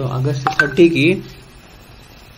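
A man's voice speaking briefly in Telugu-accented lecture speech, then a pause of low room tone.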